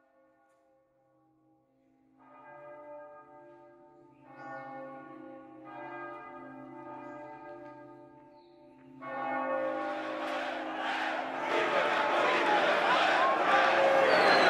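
A church bell tolling, about five slow strikes, each left to ring on and each louder than the last. From about nine seconds in, a swelling crowd din rises over it.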